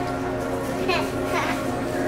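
A young girl's high squeals: two short cries that fall in pitch, about half a second apart, while her toes are being handled during a pedicure.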